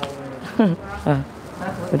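Short snatches of people's voices, a few syllables at a time. In the first half second there is a faint steady buzzing drone under them.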